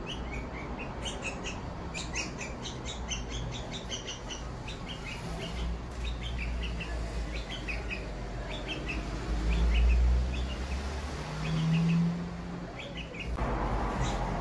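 Bulbul chicks chirping over and over, short high calls several times a second. A low rumble swells and fades past the middle, the loudest thing heard, and near the end the chirping stops and a hiss comes in.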